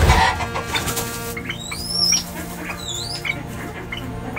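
Background music with steady held tones, with a brief loud rustle at the very start and several high, sliding bird chirps from about one and a half to three and a half seconds in.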